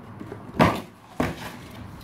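A shoe box being handled and opened: two knocks, the louder about half a second in and a sharper one just past a second.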